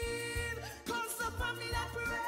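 A woman singing live over backing music with bass and drums: a long held note ends about half a second in, and her voice comes back with wordless runs about a second in.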